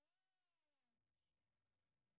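Near silence: the sound track is muted between spoken words.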